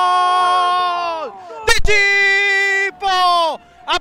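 A football commentator's drawn-out goal cry in Spanish, one long shout held on a single pitch that falls away about a second in. After a sharp click, two more shorter held shouts follow, each dropping in pitch at its end.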